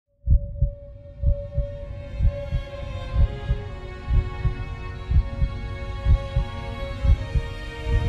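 Slow heartbeat sound effect, a deep double thump (lub-dub) about once a second, over a sustained, swelling musical drone.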